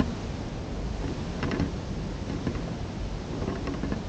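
Wind rumbling on the microphone outdoors, a steady rush, with faint scuffs as a folding e-bike's tire churns through muddy grass under throttle.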